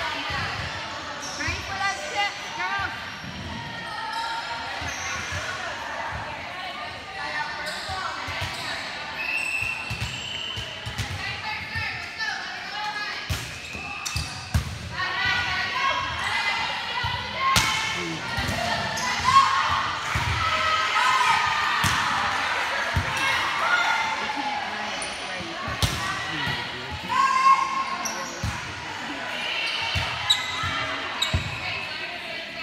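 Volleyball rally: repeated sharp smacks of the ball being passed, set and hit, and thuds of it striking the floor, ringing in a large gym, with players' voices calling out between hits.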